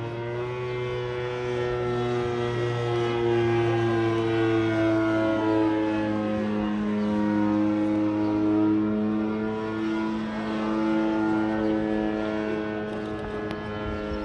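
Engine of a radio-controlled scale model Bücker 131 biplane running in flight: a steady, multi-toned drone whose pitch slowly drifts as the plane flies its manoeuvres.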